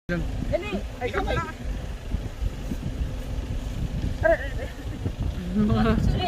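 Steady low rumble of wind buffeting the microphone, with short bits of people talking about a second in and again past four seconds.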